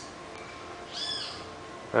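A single short bird call about a second in, one note that arches up and then falls back in pitch.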